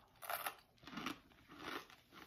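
Crunchy toasted corn nuts being chewed: three crunches a little over half a second apart.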